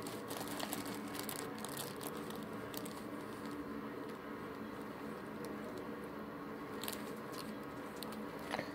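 Quiet room tone: a steady low hum with a few soft scattered clicks and rustles close to the microphone.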